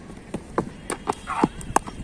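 A run of about seven sharp knocks, unevenly spaced and close by, with a short rough burst in the middle.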